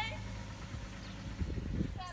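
Low, steady hum of a vehicle engine idling, with a brief low rumble about one and a half seconds in.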